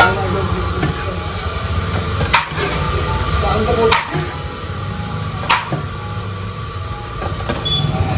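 Metal serving utensils clinking against a large aluminium biryani pot while biryani is dished out: four sharp clinks, roughly a second and a half apart, over a steady low rumble.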